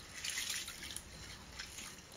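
A hand swishing and rubbing black-eyed beans in water in a glass bowl: soft splashes and the wet rustle of the beans, strongest about half a second in.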